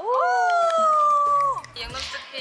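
A high-pitched female voice giving a long, drawn-out exclamation of "wow" (우와아아~). It slides up at the start, holds for about a second and a half, sinking slightly, then falls off.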